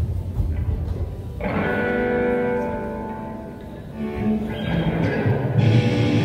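Amplified electric guitar chords in a hall, struck once about a second and a half in and again near the end and each left to ring out, with low bass notes and thumps between them: loose playing by a rock band on stage rather than a song in full swing.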